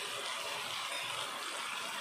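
Steady hiss of chicken in masala gravy frying and simmering in a pan.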